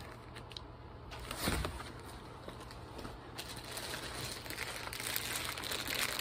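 Plastic bag wrapping crinkling and rustling as a packaged mini backpack is handled and lifted out of a cardboard box, busier in the second half. There is a soft knock about a second and a half in.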